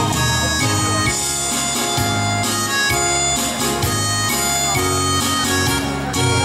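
Instrumental introduction of a pop song backing track: a lead melody of long held notes over a bass line that steps between notes about every half second, with no voice yet.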